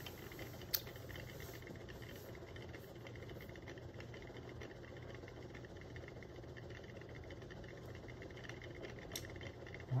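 Faint steady hum of a magnetic stirrer spinning a stir bar inside a foam-cup calorimeter, with a light click about a second in and another near the end.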